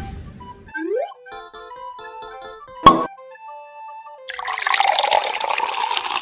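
A short tune of quick notes with one sharp click in the middle. From about four seconds in, liquid pours from a plastic soda bottle into a glass bowl as a steady splashing rush.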